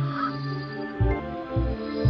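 Experimental home-recorded music: held tones over a low drone, with a low drum beat coming in about halfway through.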